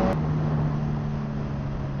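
Suzuki GSX-R 1000 inline-four engine running at a steady cruise, heard from the rider's position over rushing wind noise; its note steps down slightly just after the start and then holds steady.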